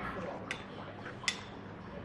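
Porcelain spoon clinking against a ceramic bowl twice: a light clink about half a second in and a sharper, louder one just past a second in.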